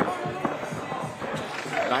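Basketball dribbled on an outdoor court, with one sharp bounce at the start, over background music and voices.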